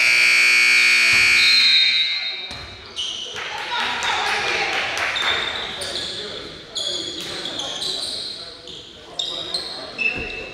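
A gymnasium scoreboard horn sounds loudly for about two and a half seconds, then cuts off. After it come echoing voices and short squeaks and thuds from play on the court.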